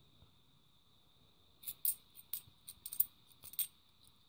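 Handful of 50p coins clinking together as they are shuffled in the hand: a quiet first second or so, then a run of light, quick metallic clicks.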